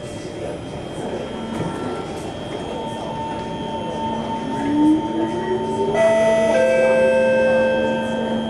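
SMRT Kawasaki C151 metro train running, with rail and running noise under the whine of its Mitsubishi GTO chopper traction equipment. A tone rises in pitch from about four and a half seconds in, and several steady higher tones switch in about six seconds in as the sound grows louder. This is typical of the train gathering speed under power.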